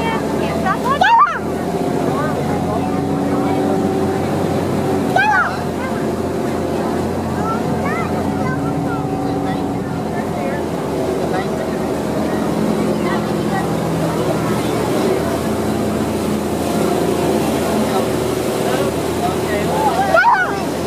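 Motorboat engine running steadily under way, its pitch drifting slightly, over the rush of the boat's churning wake.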